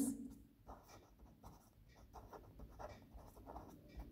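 Felt-tip marker writing on paper: a run of faint, short scratchy strokes as a word is written out.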